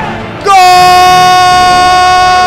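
A football commentator's long drawn-out "goool" cry, called for a goal: one loud held note that begins about half a second in and fades slowly.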